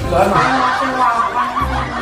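A person snickering and chuckling over background music.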